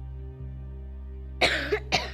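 A person coughing twice, sharply, about a second and a half in, over quiet steady background music.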